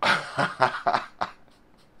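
A man laughing in about five short bursts over the first second and a half, then stopping: an excited, disbelieving reaction.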